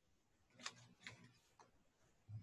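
Near silence: room tone with three faint short clicks, the first about half a second in.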